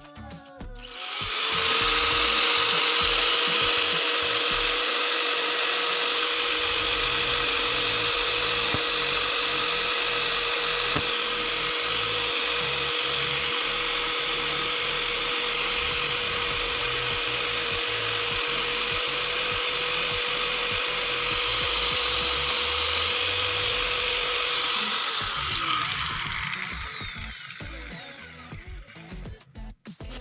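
Small electric grinder with a cutting disc starting up and running at a steady pitch with a hissing grind as it cuts through a steel coil spring. Near the end it is switched off and winds down, its pitch falling away.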